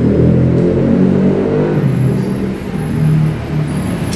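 Muffled, indistinct talking with a heavy low rumble, the words too unclear to make out.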